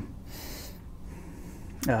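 A man drawing a short breath about half a second in, during a pause in his speech, over quiet room tone; his voice starts again with an "uh" right at the end.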